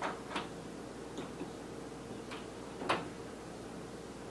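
Marker pen tapping and scratching on a whiteboard as characters are written: a handful of short sharp clicks, the loudest near the start and about three seconds in, over steady room hum.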